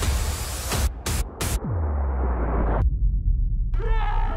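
Dramatic edited sound design: a noisy whoosh that stutters and cuts out about a second in, then a deep bass drop falling in pitch into a low held rumble, with the highs filtered away near the end.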